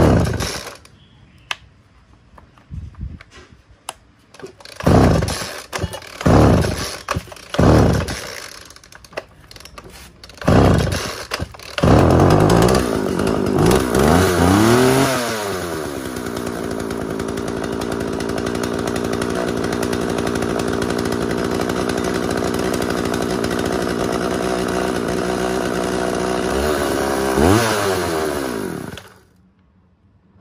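Two-stroke chainsaw primed with petrol and pull-started: several short pulls on the cord, then it catches about twelve seconds in, revs up and back down, and settles into a steady idle. Near the end it blips once and cuts out.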